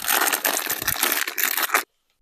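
Clear plastic bag crinkling and rustling as hands dig into it to pull out elastic rubber tying bands, with a dense run of small crackles. It stops abruptly just before the end.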